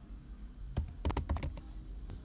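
Computer keyboard typing: a quick run of about half a dozen keystrokes, starting just under a second in and lasting well under a second.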